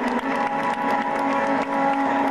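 Instrumental music with held notes, the accompaniment to an aerial circus act.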